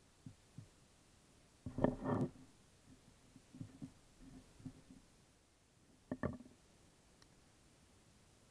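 Handling noise from a small stainless-steel multi-tool's pliers being worked on an arrow and its broadhead: a few light taps, a louder clatter of knocks about two seconds in, scattered small clicks, then another short clatter about six seconds in.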